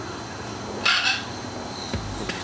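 A single short animal call about a second in, over outdoor background, with a brief low thump at the very end.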